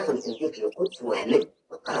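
Spoken narration with small birds chirping in the background, including a short falling whistle near the start and a few quick chirps about a second in.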